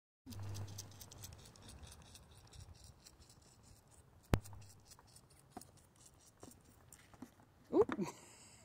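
A lamb suckling from a milk bottle's nipple, heard as faint, rapid wet clicks and smacks, with one sharper click a little past four seconds in.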